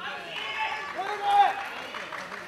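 Men shouting short calls over faint crowd noise, the loudest call about a second and a half in.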